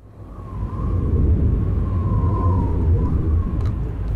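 Ambient sound-design intro of a music video: a loud low rumble that builds up over the first second, with a faint wavering tone drifting above it.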